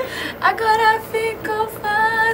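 A high female voice singing a short phrase of several brief held notes, each with a slight waver in pitch.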